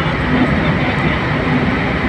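Steady engine and tyre noise of a car driving through a road tunnel, heard from inside the cabin.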